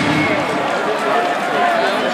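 Ice hockey arena crowd: a loud, steady din of many voices.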